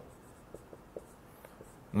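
Dry-erase marker writing on a whiteboard: a few short, faint strokes.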